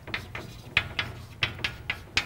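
Chalk tapping and scratching on a blackboard as letters are written: a quick, uneven series of short taps, about five a second.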